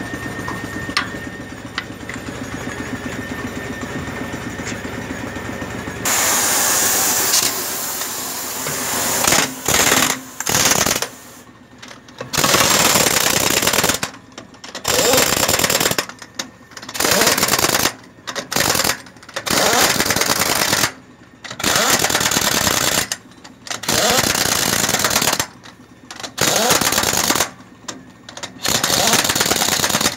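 Pneumatic impact wrench hammering on the wheel nuts of a heavy truck wheel. It runs in about a dozen loud bursts of a second or two each, with short pauses between them. The bursts start after a steadier, quieter noise in the first six seconds, and a loud continuous stretch begins about six seconds in.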